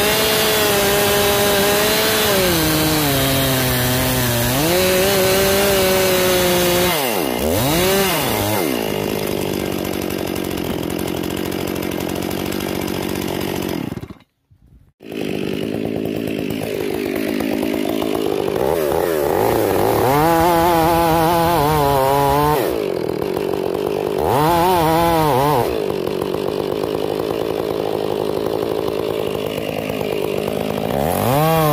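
Stihl two-stroke chainsaw cutting into an ash trunk. The engine pitch dips under load and recovers, with the throttle revved up and down several times between cuts. The sound breaks off suddenly for about a second near the middle.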